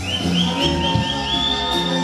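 Live norteño band playing an instrumental passage: a high lead line plays a quick run of short repeated notes, then holds a long high note over a walking bass.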